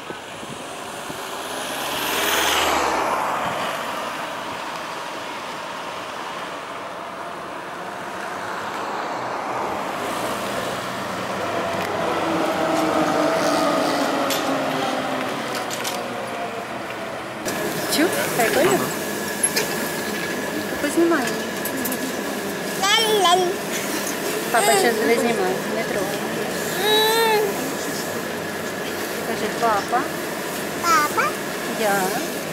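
A ZiU trolleybus passes close, its sound swelling and fading about two seconds in. Later an articulated trolleybus pulls away with a falling electric motor whine. Then, inside a moving vehicle, a steady high whine runs under a small child's babbling voice.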